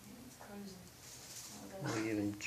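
People's voices in a small room: faint murmured speech, then a louder, low-pitched drawn-out vocal sound starting near the end.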